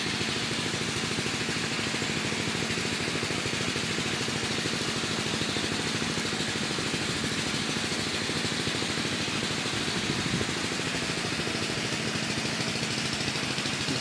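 A steady engine-like mechanical drone, running evenly with a fast low pulsing and no change in pitch or level.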